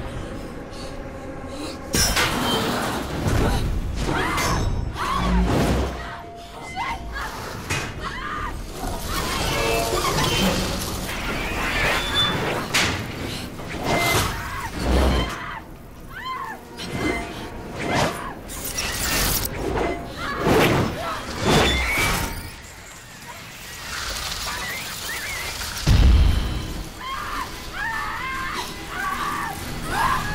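Horror film sound mix: music under a series of heavy crashes and shattering impacts, with a woman screaming and shouting.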